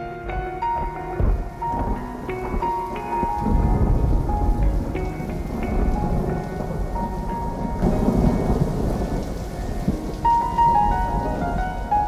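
Rain with thunder rumbling, heaviest in the middle, under a few soft held music notes.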